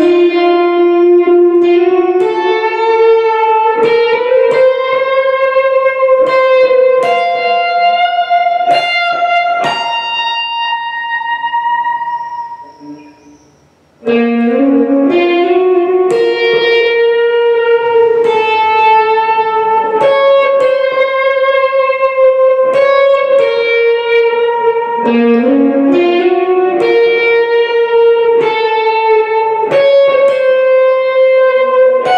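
PRS SE Standard 24 electric guitar played through a Marshall MG50CFX amp with a Boss compression-sustainer: a slow, improvised line of long, sustained single notes with a few short stepwise runs. About halfway through, a held note fades away almost to silence, then the playing starts again.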